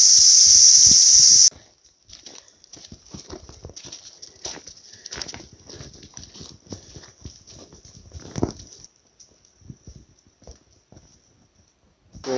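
Insects chirring loudly in a steady high buzz, which cuts off suddenly about a second and a half in. Then footsteps of walkers and a dog crunching along a dirt bush track in an uneven patter, with fainter insects buzzing behind them until near the end.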